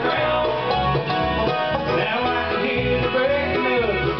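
Live bluegrass band playing an instrumental passage: five-string banjo, acoustic guitar, mandolin, fiddle and bass together.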